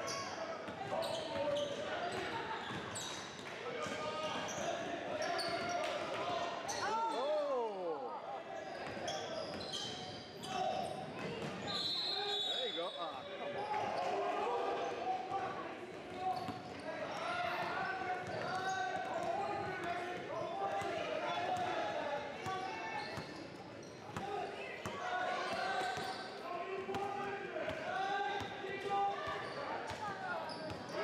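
A basketball bouncing on a hardwood gym floor, with voices of players and spectators echoing in the large gym throughout. A brief high-pitched referee's whistle sounds about twelve seconds in.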